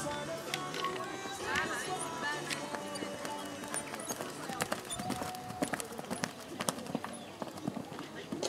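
A pony's hoofbeats as it canters on a sand arena, heard as a run of sharp knocks in the second half, under background music that fades out in the first few seconds.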